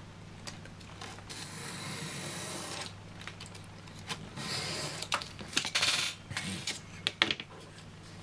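Retractable craft knife drawn along a steel ruler to cut through foam board: several scraping strokes, then a few sharp clicks and taps as the ruler is shifted.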